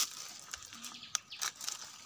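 Plastic carrier bag crinkling faintly as it is handled while mushrooms are gathered into it, with two sharper clicks a little past the middle.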